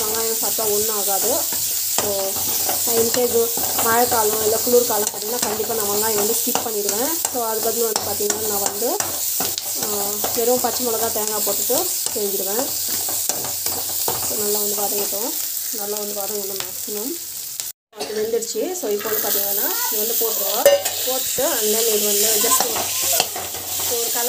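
Sliced onions frying and sizzling in oil in a pan while a spoon stirs them, scraping against the pan in repeated pitched strokes. The sound cuts out for a moment about three-quarters of the way through.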